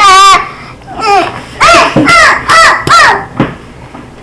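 A child's voice crying out loudly: a high, wavering shriek at the start, then a run of about five short wails that each rise and fall in pitch.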